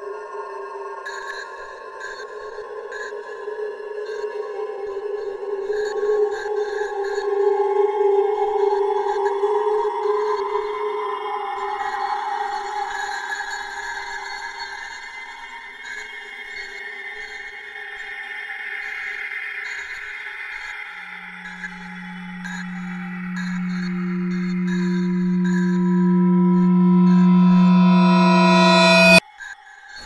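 Suspense film score of long sustained electronic tones. A low drone enters about two-thirds of the way in and swells steadily louder, then cuts off suddenly just before the end.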